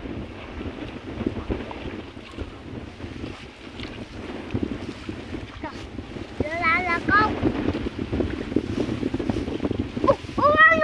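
Wind buffeting the microphone over the rustle and swish of rice stalks and shallow paddy water as a person wades through a flooded rice field. A short high-pitched call, two quick rising-and-falling notes, comes about two-thirds of the way through.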